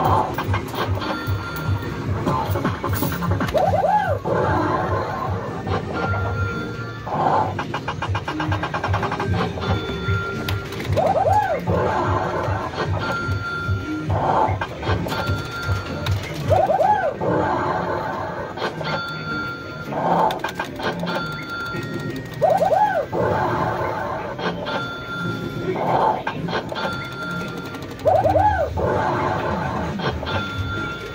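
Fruit machines in an arcade playing their electronic jingles and bleeps. A short high beep recurs every few seconds and a swooping tone returns about every six seconds, over a steady low pulse.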